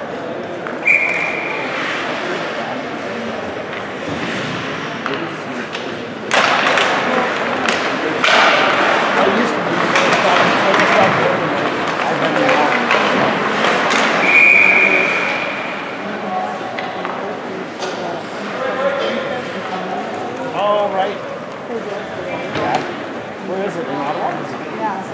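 Ice hockey game in an arena: a referee's whistle sounds briefly about a second in. About six seconds in, a sharp bang from the rink sets off loud shouting and cheering from spectators and players, and a longer whistle blast about fourteen seconds in stops play.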